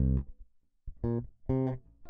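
Background music of plucked guitar and bass notes: a few notes, a pause of about half a second, then two more single notes.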